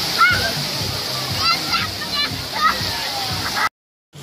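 Fountain water jets spraying and splashing steadily, with children's high-pitched shouts over a crowd's voices. The sound cuts out abruptly near the end.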